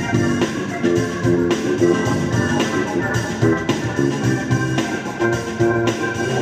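Funk played on a Yamaha MOX synthesizer's Hammond organ sound, in short rhythmic chords, with an electric bass guitar underneath.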